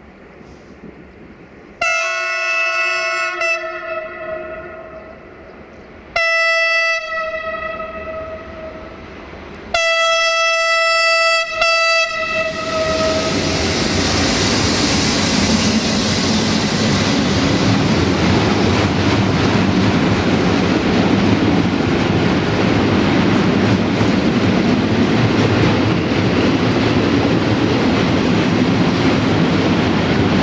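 A Softronic Transmontana Class 480 electric locomotive sounds its multi-tone horn three times, a few seconds apart. From about twelve seconds in, the freight train of loaded car-carrier wagons rolls past close by, its wheels clattering steadily over the rail joints.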